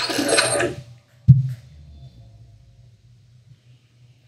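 Opening sting of an RT news-video ident: one sharp, loud hit with a deep thump about a second in, followed by faint electronic tones that fade out.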